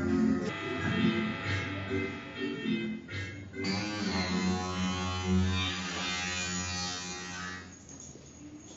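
Live electronic sounds played from a gaming joystick used as a music controller: choppy pitched synthetic notes at first, then a sustained buzzing drone with a sweeping high overtone from about halfway through. The sound dies away just before the end.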